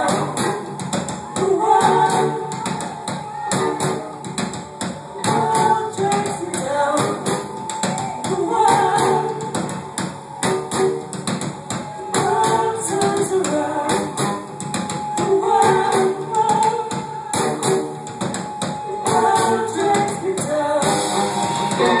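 Live band performing a rock song: female singing over guitars and a steady percussive beat.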